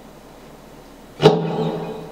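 Electric guitar struck once about a second in, a single pitched note or chord ringing out and slowly fading over faint amplifier hiss.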